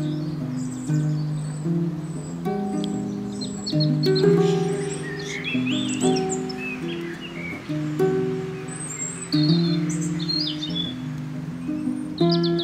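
Kamele ngoni, an African harp, plucked in a repeating pattern of low notes, with birds chirping and twittering above it.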